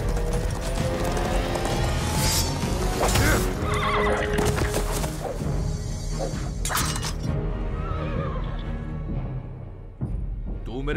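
Horse galloping under a film music score, with a horse neighing about midway and a few sharp hits. The sound fades near the end.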